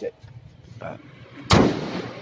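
A 2007 Ford Everest's hood dropped shut, landing with a single loud bang about one and a half seconds in.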